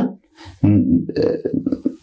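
A man speaking in a low voice after a brief pause, with no other sound standing out.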